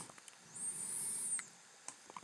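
A faint, high-pitched squeak lasting about a second, rising slightly and then falling away, followed by one or two faint ticks.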